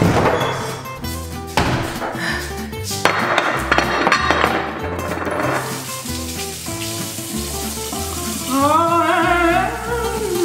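Background music with a steady, repeating bass beat. A few knocks and clinks come in the first half as a bottle is handled, then a bathroom faucet runs into the sink. Near the end a wavering, gliding tone rises and falls over the top.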